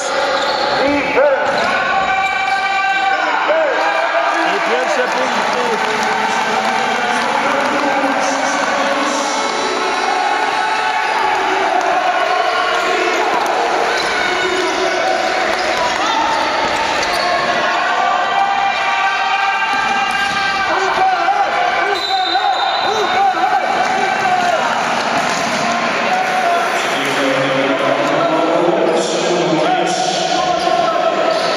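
Live youth basketball play in a large sports hall: the ball dribbling on the hardwood court, with players' and bench voices calling out throughout.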